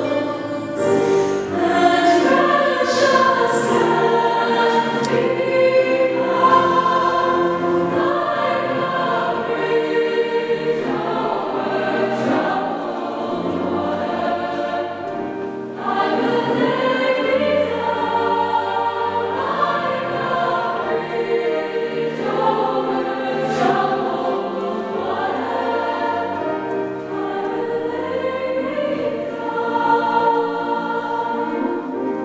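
Mixed youth choir singing a sustained, harmonised song with piano accompaniment.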